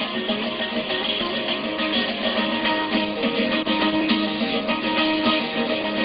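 Bağlama (saz) playing an instrumental interlude of quick plucked notes between sung verses of an âşık folk song.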